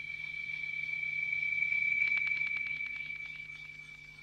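A steady high-pitched ringing tone that swells to its loudest about halfway through and then fades, with a rapid run of ticks, about a dozen a second, in the middle.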